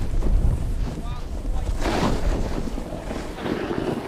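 Wind buffeting a GoPro's microphone during a run through deep powder snow, with a rush of sliding snow about two seconds in and again near the end.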